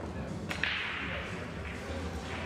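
Pool balls clicking together once on a pool table about half a second in, followed by a short hiss that fades away.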